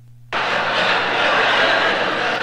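A large audience breaks into laughter all at once about a third of a second in, loud and sustained, in response to a punchline.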